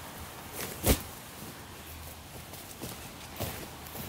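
Footsteps on a dry pine-needle forest floor, irregular crunches and rustles as a person walks carrying camping gear, with one louder thump about a second in.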